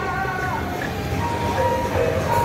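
Procession music: a suona (Taiwanese gǔchuī band) melody, bending and sliding between held notes, over steady street and traffic noise.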